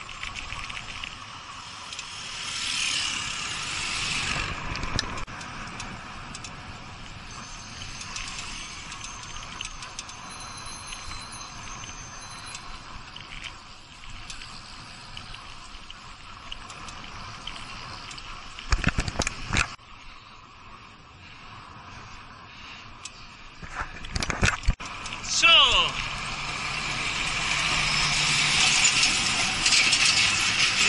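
Wind and road noise from a moving bicycle, with short clattering knocks twice past the middle. Near the end a truck's engine grows louder as it comes alongside.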